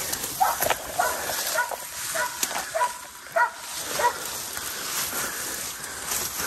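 Belgian Malinois barking in short, even calls about twice a second while baying a hog at a distance, with brush rustling close by as someone pushes through undergrowth.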